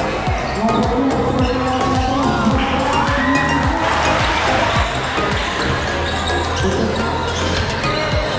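A basketball being dribbled, bouncing repeatedly on a hard indoor court floor, with music playing over it.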